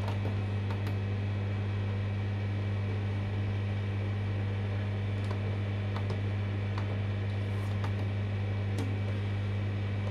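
A steady low electrical hum, with a few faint clicks as the washing machine's control-panel buttons are pressed and its program dial is turned.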